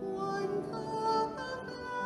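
A woman singing a slow church hymn over sustained instrumental accompaniment, holding long notes that step through the melody.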